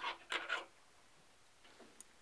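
Fly-tying thread rubbing and scratching on an aluminum tube fly body as it is wound on in the vise: three short, faint scratchy rubs in the first half second.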